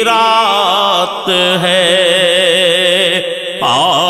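Male voice singing an Urdu naat, holding a long melismatic phrase with wavering pitch over a steady sustained vocal backing; a new phrase starts with a rising glide near the end.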